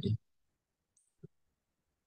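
The tail of a man's spoken word, then a pause that is almost silent, broken about a second in by two faint, very short clicks: one high and one lower, close together.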